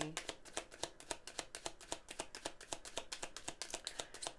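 Tarot cards being shuffled by hand: a fast, steady run of small card clicks.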